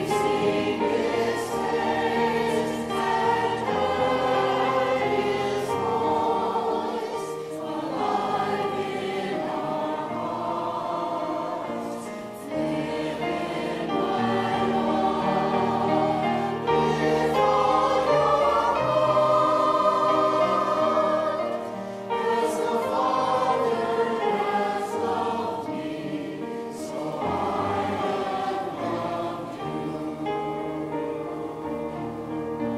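Church choir singing a hymn.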